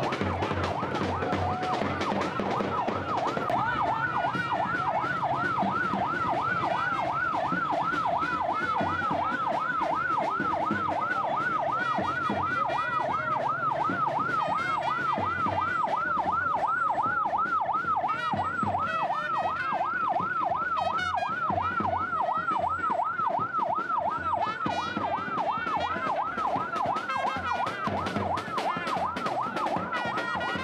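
Ambulance siren on a Toyota HiAce ambulance, wailing in a fast up-and-down sweep about three times a second, steady once it settles in a few seconds in.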